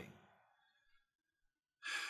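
Near silence in a small room, then near the end a man's short audible breath, a sigh-like rush of air into the microphone.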